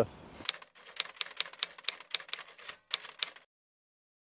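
Typewriter key-strike sound effect: a quick, irregular run of sharp clicks, about six a second, that stops suddenly about three seconds in.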